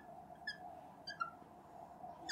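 Marker tip squeaking on a glass lightboard while writing a word: a few short, faint, high squeaks about half a second apart, over a faint steady room hum.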